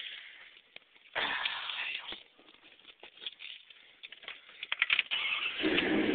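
A 1992 Dodge Dakota's 318 V8 with Flowmaster dual exhaust being started, heard from inside the cab. There is a brief noise about a second in, then a few clicks. About five seconds in the engine starts and settles into a steady idle.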